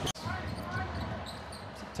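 A basketball being dribbled on a hardwood court, amid live game sound. The sound drops out for an instant at the very start, at an edit cut.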